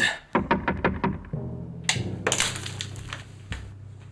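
A quick run of about eight sharp cracks in the first second. Then a low, sustained music chord sets in, with a couple of louder hits over it.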